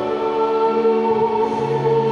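A choir singing in long held notes, several pitches sounding together, with a lower note coming in about one and a half seconds in.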